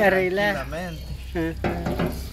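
A person talking, with a low steady hum underneath.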